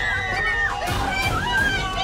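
Several young women shrieking and cheering excitedly at once over loud party music with a heavy beat.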